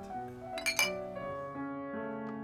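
Glasses clinking together in a toast: two sharp clinks in quick succession a little under a second in, over background music.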